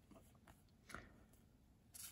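Near silence, with a few faint soft ticks of trading cards being slid through the hand.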